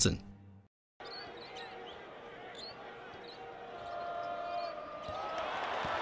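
Basketball game sounds: a ball being dribbled on a court under arena crowd noise, which starts after a second of silence and grows louder from about four seconds in.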